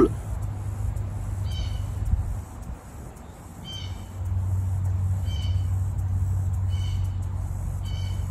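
An animal's short high call, repeated five times about a second and a half apart, over a low steady hum.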